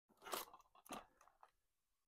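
Plastic DVD case handled and turned over, crackling twice, about a third of a second and a second in, with a few smaller crackles after.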